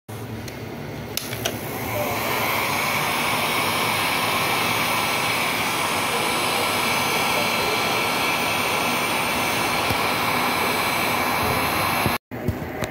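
Black & Decker heat gun running steadily, its fan blowing hot air onto heat-shrink tubing over a cable; it comes up to full strength about two seconds in, after a couple of clicks.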